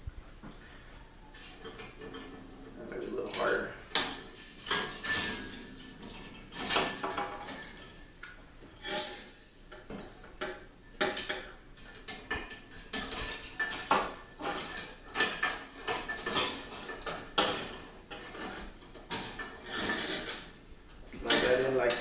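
Steel rotisserie spit, its forks and a wire fish basket being handled and fitted together: irregular metal clinks, knocks and rattles.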